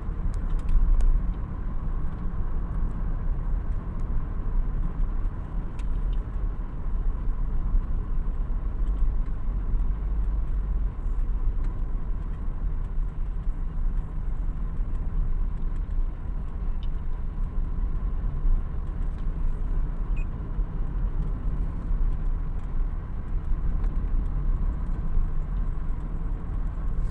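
A car driving at a steady speed, heard from inside the cabin: a steady low rumble of engine and tyre noise.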